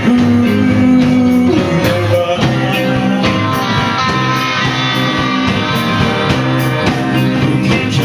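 Live rock band playing loudly: distorted electric guitars over bass guitar and a drum kit keeping a steady beat.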